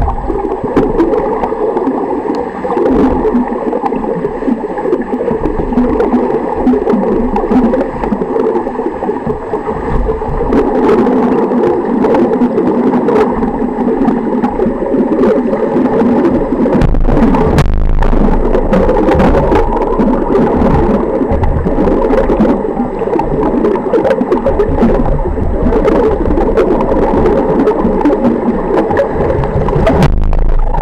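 Underwater pool sound picked up by a submerged camera: a loud, steady, muffled hum with bubbling and scattered clicks as swimmers stroke past the lens.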